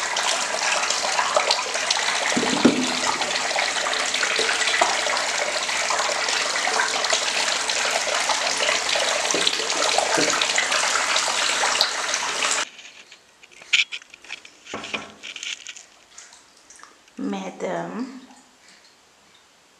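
Tap water running into a bathtub, a steady rush that stops abruptly about two-thirds of the way through. After it come a few quiet splashes in the bathwater.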